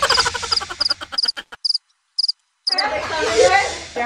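Cricket-chirp sound effect: short, high, doubled chirps repeating about every half second, the classic 'crickets' gag for an awkward silence. The sound drops out completely for under a second just past the middle, and voices and laughter come back near the end.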